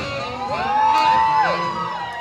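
A single high whoop from the audience, rising quickly, held steady for about half a second, then dropping off sharply, over slow jazz music.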